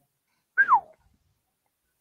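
A single short, high-pitched squeal about half a second in, falling steeply in pitch.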